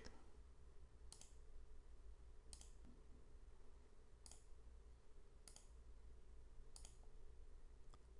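Five faint computer mouse clicks, a second or so apart, over a low, steady hum.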